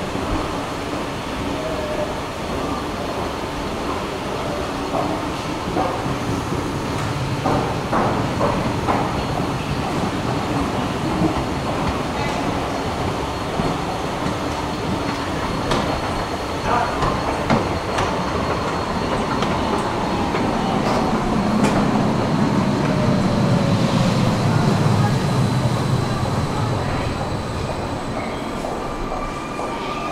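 S-Bahn train heard from an escalator climbing up to the platform, over a steady hum of station and escalator noise with scattered clicks. Past the middle a low train rumble swells for several seconds with a slowly falling whine over it, and near the end a rising whine begins.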